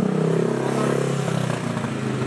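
Motorcycle engine running close by, a steady low drone that dies away about a second and a half in.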